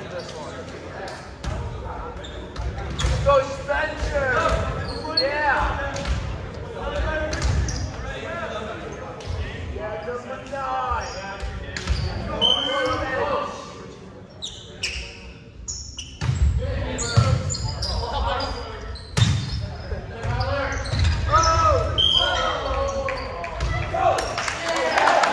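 Players' voices calling out and chatting in a large gym, with scattered sharp slaps of a volleyball being hit and bouncing on the hardwood court.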